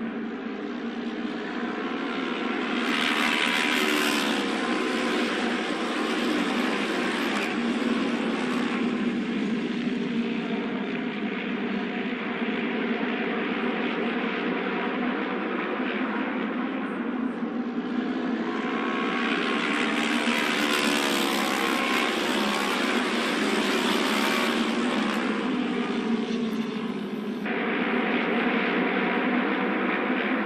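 Auto race motorcycles' 600 cc twin-cylinder engines running at speed on the oval during the pre-race trial laps. The engine note rises and falls as the bikes circle. It swells louder about three seconds in and again around twenty seconds in, and the sound changes abruptly near the end.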